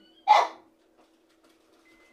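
One short, sharp vocal sound just after the start, dying away within a fraction of a second, followed by a faint steady low hum.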